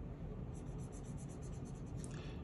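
Felt-tip marker colouring in a small shape on a paper card, faint, with quick, even back-and-forth scribbling strokes starting about half a second in.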